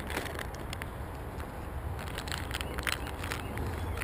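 A plastic soft-bait bag being handled close to the microphone: scattered short crinkles and rustles over a low steady rumble.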